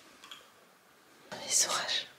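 Near silence, then a brief whisper starting about a second and a half in.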